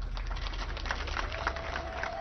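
A pause in a speech, picked up through the open podium microphone: a quiet low hum and faint background noise with scattered small ticks, and a thin, steady held tone coming in about halfway through.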